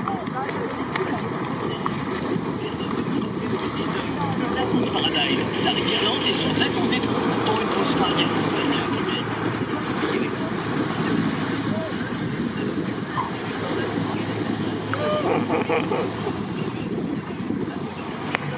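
Lake water rushing and splashing around inflatable towed tubes, over steady wind noise on the microphone, with faint shouts from the riders.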